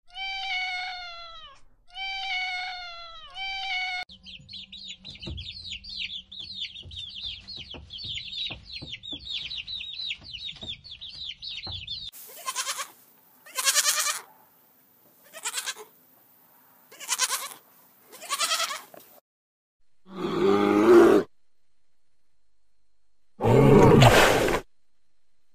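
A cat meowing three times, each call falling in pitch, then chicks peeping rapidly and continuously for about eight seconds. This is followed by about six short noisy animal bursts, and near the end two louder rasping sounds.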